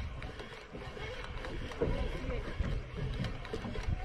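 Irregular low rumble of wind and handling noise on a body-worn camera microphone while a spinning reel is cranked to bring in a fish.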